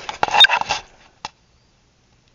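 A short clatter of handled objects with a brief metallic clink, then one sharp click about a second later.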